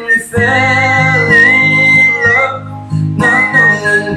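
A man whistling a melody over a recorded backing track with acoustic guitar. One long high note with vibrato is held from about half a second in, then a shorter whistled phrase follows near the end.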